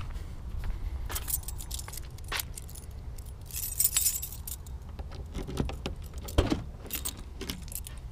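A keyring jangling as a key goes into the trunk lock of a 2004 Ford Crown Victoria, loudest about four seconds in, with several sharp clicks as the lock is turned and the trunk lid unlatches and opens.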